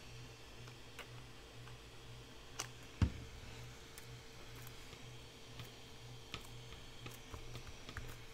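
Faint scattered taps and clicks of hands pressing a glued paper piece onto a small notebook cover on a cutting mat, with one sharper knock about three seconds in, over a faint steady hum.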